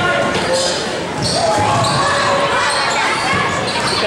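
A basketball being dribbled on a hardwood gym floor, with voices calling out and the echo of a large gym.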